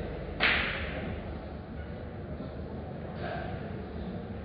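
A single sharp crack of a pool shot about half a second in, a cue striking the ball with the ball collisions close behind, fading quickly. A much fainter click follows near the end, over steady low room hum.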